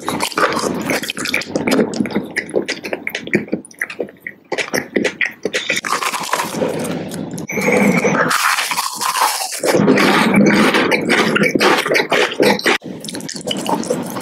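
Close-miked mouth eating sounds: biting, chewing and crunching candy, with wet lip smacks and clicks. It grows louder and steadier from about halfway through.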